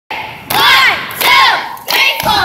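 A girls' cheerleading squad shouting a cheer in unison: two loud shouted phrases in quick succession.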